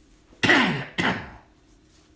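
A man coughing twice in quick succession: a loud cough about half a second in and a shorter one about a second in.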